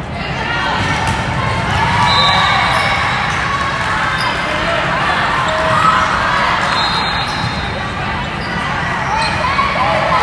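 Busy indoor volleyball hall: many voices of players and spectators calling and chattering, with ball hits and bounces echoing in the large hall. Two brief high tones sound, about two seconds in and again near seven seconds.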